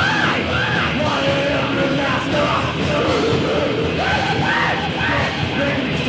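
Thrash metal band playing live: distorted electric guitar and drums, loud and steady, under shouted vocals.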